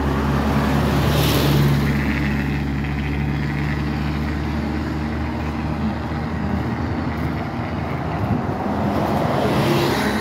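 Road traffic passing close by: engine hum and tyre noise from cars, swelling as a vehicle goes by about a second in. It swells again near the end as a city bus drives past close alongside.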